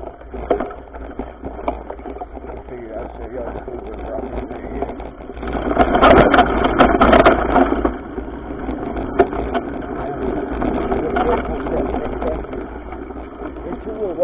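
Mountain bike rolling over dirt singletrack, heard from a camera mounted on the bike: tyre noise, rattling of the bike and camera mount, and wind on the microphone. Between about five and eight seconds in it gets louder and rougher, with sharp knocks as the bike goes over bumpy ground.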